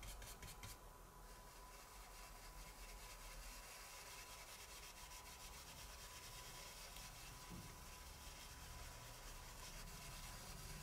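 Faint soft rubbing of a stencil brush as it works ink onto card, with a few light taps in the first second.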